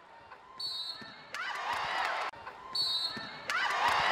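Referee's whistle blowing a foul call, a short steady shrill blast, followed by arena crowd noise and sneaker squeaks on the basketball court. The whistle and crowd noise are heard twice.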